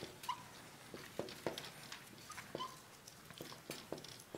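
Marker pen writing on a white board: faint, irregular scratchy strokes, with a few short squeaks as the tip drags, once near the start and twice a little past the middle.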